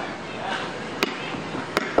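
Open-air stage ambience with faint background voices, broken by two sharp clicks, one about a second in and one near the end.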